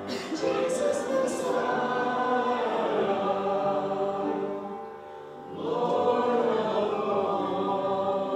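Church congregation and worship leaders singing a worship song together in long sustained phrases, with a short breath between phrases about five seconds in.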